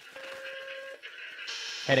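Radar sound-effect beep in an old-time radio drama: a steady mid-pitched electronic tone just under a second long, then a short hiss of radio static just before the controller's voice returns.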